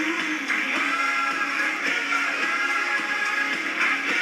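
Commercial soundtrack music with a singing voice, played through a television's speakers and picked up in the room, thin and without bass.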